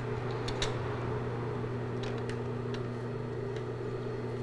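Steady electric hum of an industrial sewing machine's motor left running while the needle is stopped, with a few faint light clicks as the fabric is handled and pins are pulled.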